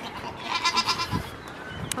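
A goat bleating once, a short high quavering call about half a second in.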